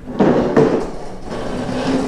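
Folding plastic chair clattering and scraping on a concrete floor as it is moved. There is a sudden clatter about a quarter second in and a second knock just after, fading within about a second.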